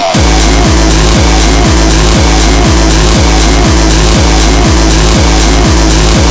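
Hardcore techno in a DJ mix: a heavily distorted kick drum pounds in a steady fast rhythm under dense synth layers. The kick drops back in right at the start after a short break.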